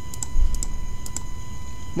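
A run of light, irregular computer input clicks, about four or five a second, as an expression is keyed into an on-screen calculator.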